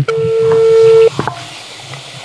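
Mobile phone on speaker, held against a microphone, playing a ringback tone as a call is placed: one loud, steady tone about a second long, then a click and a brief higher beep.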